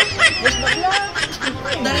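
Men's voices: quick, animated talk broken up by short laughs.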